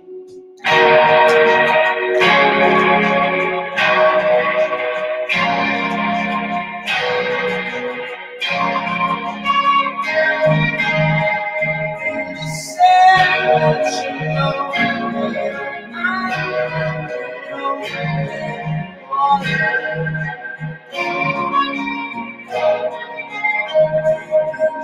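Psych-rock band playing live, instrumental: an electric guitar strums chords about every second and a half, and low bass notes join about ten seconds in.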